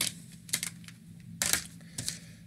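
Plastic CD jewel cases being handled: a few sharp clicks and clacks, one at the start, a pair about half a second in, and a longer, louder clack about a second and a half in.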